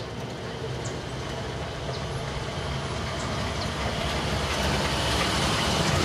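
A motor vehicle engine running, with a low rumble that grows steadily louder.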